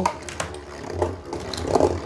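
A Galaxy Pegasus Beyblade, a metal spinning top, whirring steadily as it spins in a clear plastic stadium just after launch, with a constant low hum. Faint clicks as a second top is fitted onto its launcher.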